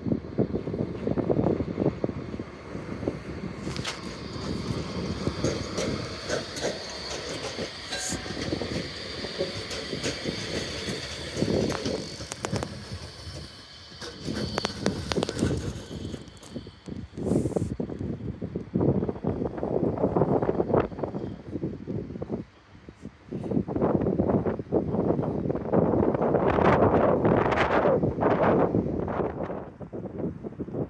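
Nottingham Express Transit light-rail tram running, with a high steady whine through the first half. Louder wheel and track noise follows in the second half as the tram passes over the crossover points.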